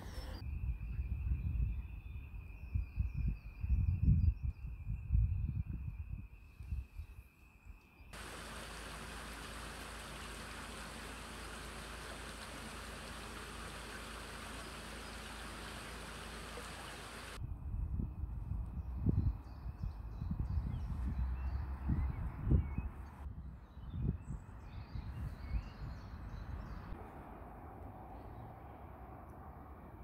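Low rumbling thumps of wind and handling on a handheld microphone, then, from about eight seconds in, a shallow stream running over stones as a steady, even rush for about nine seconds, cutting off sharply, after which the low wind rumble returns.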